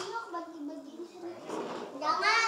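Indistinct chatter of young children's voices close by, with a short click at the start.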